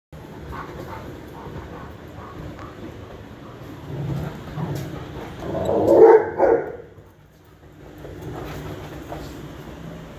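Two dogs play-fighting and vocalising, with the loudest outburst, a bark, about six seconds in.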